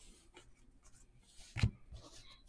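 Panini NBA Hoops trading cards being slid one by one off a stack held in the hands: soft scratchy sliding of card on card, with a single louder thump about one and a half seconds in.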